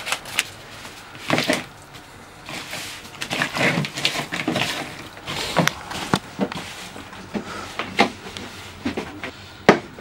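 Hands working raw chicken fillets and seasoning in a plastic bowl, making irregular rustles and short knocks.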